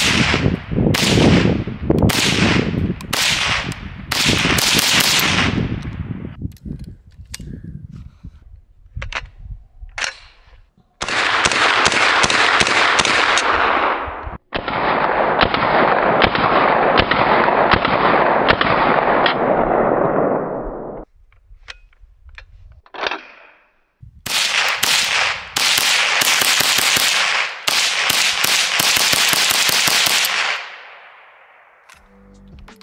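Ruger 10/22 .22 LR semi-automatic rifle firing several strings of rapid shots, with short pauses between the strings.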